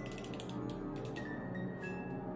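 Wind-up music box in the base of a snow globe: its mechanism clicking steadily, several clicks a second, while a few high, thin chiming notes begin to sound.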